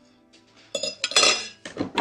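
Metal cutlery clinking against ceramic dinner plates: a few sharp clinks starting about three quarters of a second in.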